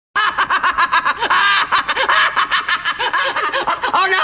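A person laughing in a fast, unbroken run of short laughs that cuts in abruptly.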